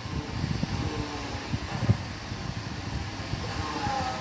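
Low, irregular rumbling with many soft knocks on the microphone, the handling noise of a phone being moved while it records.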